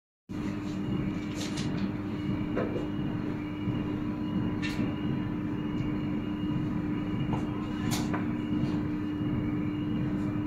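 A steady mechanical hum: one constant mid-pitched tone over a low rumble, with a few faint brief clicks scattered through it.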